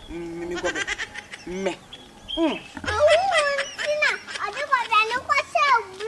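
A young child's high-pitched voice, wavering up and down without clear words.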